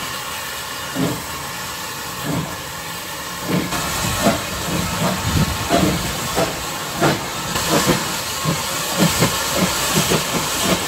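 Small saddle-tank steam locomotive hissing steam, its exhaust chuffs growing louder and quicker from about three and a half seconds in as it gets under way with its coaches.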